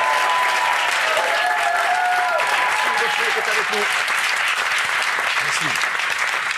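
Studio audience applauding steadily, with voices calling out over the clapping in the first few seconds.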